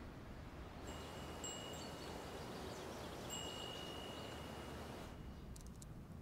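Faint high chime ringing: two long, steady notes over a soft hiss, which stop about five seconds in. A few light clicks follow near the end.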